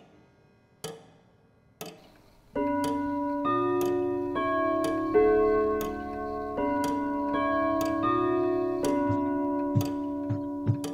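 A clock ticking about once a second. About two and a half seconds in, music of sustained keyboard chords comes in over the ticking.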